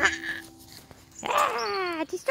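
Music cuts off at the start. After a short pause, a drawn-out wail begins about a second in and falls steadily in pitch.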